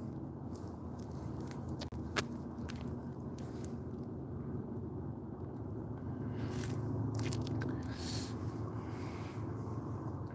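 Someone getting a drink: faint clicks and rustling handling noise, with one sharper click about two seconds in, over a steady low hum.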